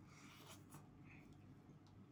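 Faint eating sounds, a bite of milkfish being taken and chewed with soft mouth noises, with a light click near the end; otherwise near silence.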